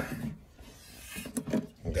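A few faint, short rubs and knocks of handling in the second half, between the end of one spoken phrase and the start of the next.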